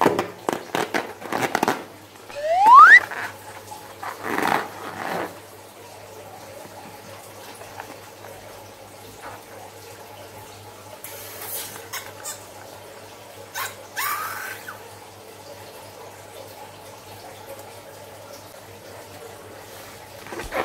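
A filled latex balloon squeezed and rubbed in the hands, giving one sharp rising rubbery squeak about three seconds in. Later, scissors snip the balloon open and its liquid filling runs out into a bowl of foam beads.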